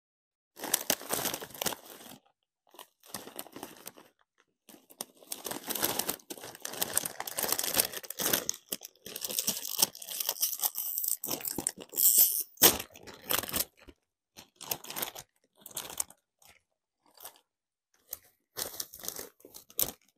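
Close-miked Doritos chip bag crinkling as a hand digs into it, and tortilla chips crunching, in irregular loud bursts with short silent gaps, busiest in the middle and sparser near the end.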